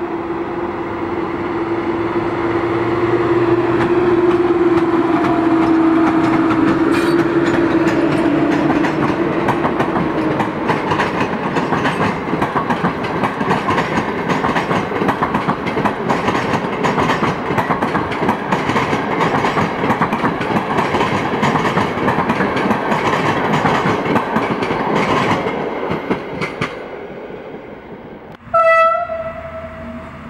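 A PKP Intercity electric locomotive passes hauling passenger coaches, with a steady whine that drops slightly in pitch as it goes by. It is followed by a long run of rapid wheel clatter over the rail joints as the coaches roll past, which fades out. A short, loud horn blast comes near the end.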